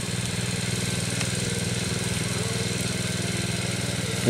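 Small engine-driven water pump running steadily at a constant speed, draining the pits.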